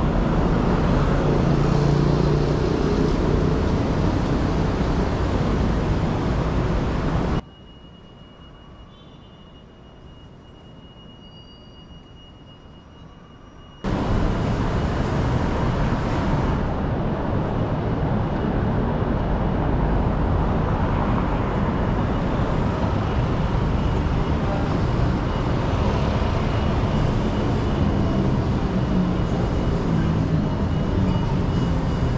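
Steady road traffic noise of a busy city street, heard from the sidewalk. About seven seconds in the sound drops suddenly to a faint hum for about six seconds, then comes back just as suddenly.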